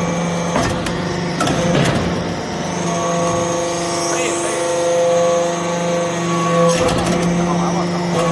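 Hydraulic power unit of a metal-chip briquetting press running with a steady, even hum, a faint high whine rising about four seconds in, and a few sharp metallic knocks in the first two seconds and again near the end.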